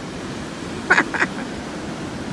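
Steady rush of ocean surf washing up on the beach. About a second in come two short, quick voice sounds.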